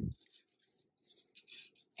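Faint rustling and light scraping of cardstock as the panels of a folded paper card are turned over by hand, with a couple of slightly louder rustles about a second and a half in.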